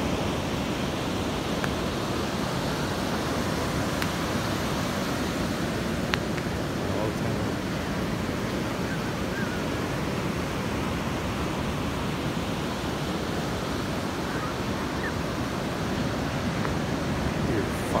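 Ocean surf breaking and washing up a sandy beach: a steady, unbroken rush of waves.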